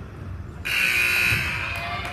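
Gym scoreboard buzzer sounding once, loud and steady. It starts abruptly under a second in and fades after about a second.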